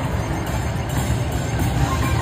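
Steady casino-floor din, heavy in the low end, with slot-machine music under it.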